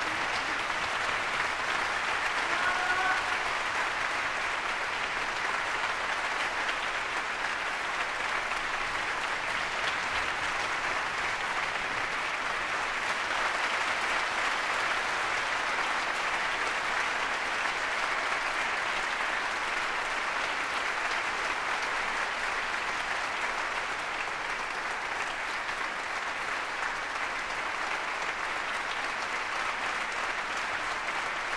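Large concert-hall audience applauding, a steady, even clapping that holds its level throughout.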